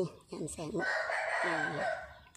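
A rooster crowing once, a rasping call that starts a little under a second in and lasts about a second, under a woman's brief speech.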